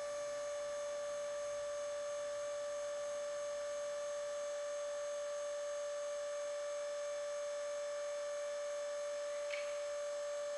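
Comil carcass press standing powered but not moving, giving a steady high-pitched whine with overtones that does not change; a faint click near the end.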